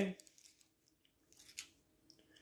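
The end of a man's spoken word, then a quiet room with a few faint, short clicks, the clearest about one and a half seconds in.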